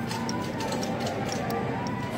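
Shopping cart rolling across a supermarket's tiled floor, its wheels and frame giving light, fairly regular clicks, over steady store ambience with faint background music.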